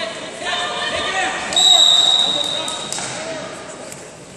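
A referee's whistle gives one long, high, steady blast starting about a second and a half in and fading over the next second or so. Shouting voices come before it, and a few sharp slaps follow.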